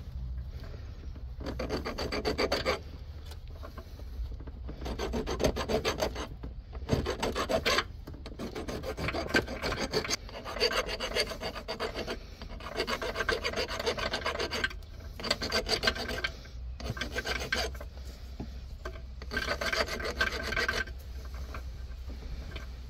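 Flat metal hand file scraping over corroded metal in about nine separate passes, each a second or two long with short pauses between them. The file is cleaning a corroded ground connection back to bare metal; a bad ground is what causes the power-supply and motor error codes in the automated gearbox.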